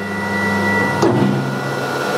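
BCAM S-series CNC router running with a steady mechanical whine; about a second in a click, then some of its tones cut out and the low hum drops in pitch as the safety sensor halts the machine.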